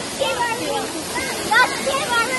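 Steady rush of a 40-foot waterfall pouring into a pool, with brief voices calling over it twice.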